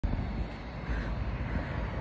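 Low, fluctuating rumble of outdoor background noise, with no clear event standing out.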